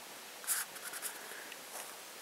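A fingertip swiping across a smartphone's glass touchscreen: one brief rubbing sound about half a second in, followed by a few faint ticks.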